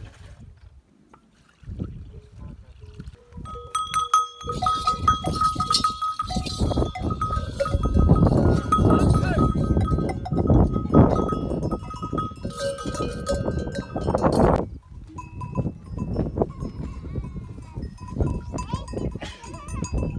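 Cattle moving about with bells clinking and jangling, over a heavy low rumble; the sound drops off suddenly a little past halfway and lighter clinking and rumble carry on.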